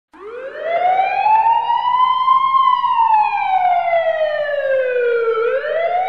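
A siren wailing slowly: it swells in, climbs for about two and a half seconds, sinks back for nearly three, and starts climbing again near the end.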